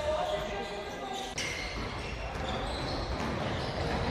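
Game sound from a basketball gym: players' voices echoing in the hall and a ball bouncing on the hardwood floor, with one sharp knock about a second and a half in.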